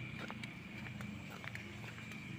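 Quiet outdoor night ambience: a steady low hum and a thin, high steady tone, with scattered light clicks.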